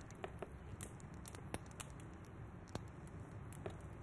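Quiet room tone with a low hum and scattered faint, irregular clicks and ticks.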